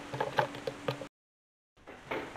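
Faint light clicks and rustling from someone moving right up against the camera and microphone, then a sudden drop to dead digital silence for over half a second at an edit cut, before faint room tone returns.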